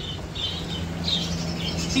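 Small birds chirping, several short high calls spread through the moment, over a steady low hum.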